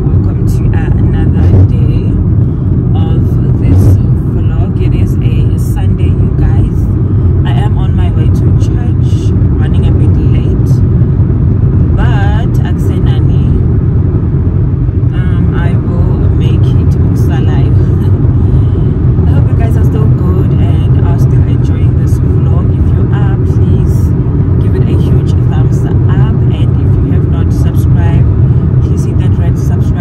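Steady low road and engine rumble of a moving car, heard from inside the cabin, with a voice faintly over it.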